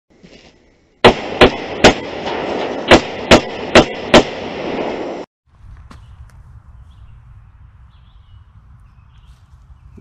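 Seven gunshots in quick succession, a group of three about 0.4 s apart and then a group of four, over a steady noise that cuts off abruptly about five seconds in, leaving quiet outdoor background.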